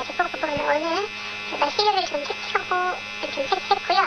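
A person speaking Korean in an interview, over a steady electrical hum.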